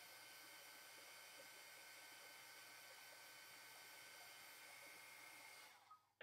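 Craft heat gun blowing to dry wet acrylic paint, heard only faintly as a steady hiss with a thin whine because the webcam's microphone turns itself down against it; it stops just before the end.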